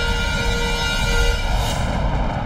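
Dramatic background score: sustained, tense held tones over a deep low rumble, breaking off about a second and a half in to a rising whoosh near the end.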